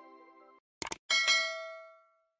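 Subscribe-animation sound effect: a quick double click just before a second in, then a bright notification-bell chime of several tones that rings out and fades away over about a second.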